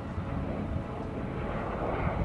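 A steady low rumbling drone with a faint hiss, of the engine-like kind heard from an aircraft.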